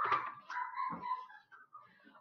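Pages of a picture book being flipped and handled, soft paper rustling with a few light knocks. A faint thin whine runs under the rustling in the middle.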